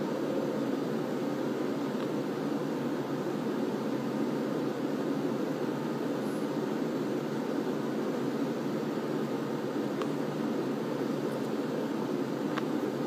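Steady, unchanging room hum with no speech, like an air conditioner or fan running, with a couple of faint clicks.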